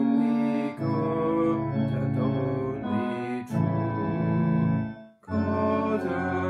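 Hymn sung by a man to organ accompaniment, in held chords. The music breaks off for a moment about five seconds in, then starts again.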